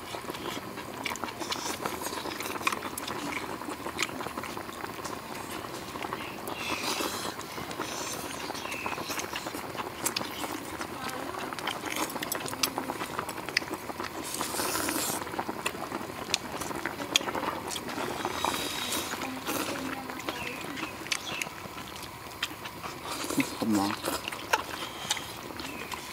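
Eating sounds: chopsticks clicking against bowls and wooden plates, with chewing and slurping of soup, in scattered small clicks over a steady outdoor background.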